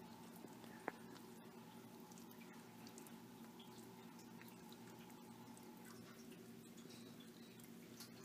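Near silence: room tone with a faint steady hum and a single faint click about a second in.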